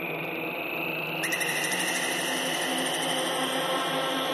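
Intro of a darkpsy forest-trance track: layered synthesizer drones under a slowly rising sweep, with a brighter high synth layer coming in about a second in.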